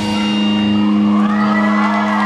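A live rock band's final chord rings out as one steady held note once the drums stop. An audience begins cheering and whooping about halfway through.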